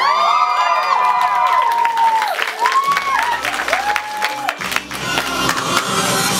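Audience cheering and clapping, with a burst of overlapping whoops at the start and two more single whoops a few seconds in, over music.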